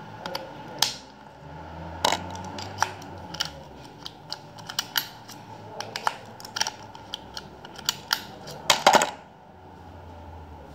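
Irregular sharp metallic clicks and clinks from a 2013 Renault Master ignition lock cylinder being handled and worked with a small tool, with a louder cluster of clicks about nine seconds in.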